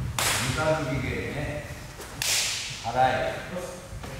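Karate gis of a whole class snapping sharply in unison as techniques are thrown, twice, about two seconds apart, with a man's short calls between.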